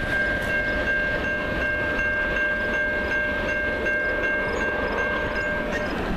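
Diesel freight locomotive's air horn holding one long, steady chord of several notes, over the low rumble of the train rolling away. The horn cuts off about a second before the end.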